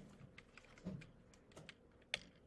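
Faint computer keyboard keystrokes: a handful of light, irregular clicks.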